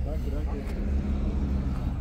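A car engine idling nearby, a steady low hum, with voices talking in the background.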